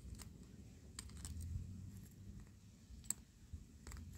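Faint metallic clicks of snap-ring pliers working inside a cast engine cylinder head: a few sharp, separate ticks, a pair about a second in, another near three seconds, over a low background rumble.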